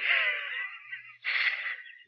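A man's breathy exhalations, twice: a longer one with a faint voiced trace, then a shorter one about a second later.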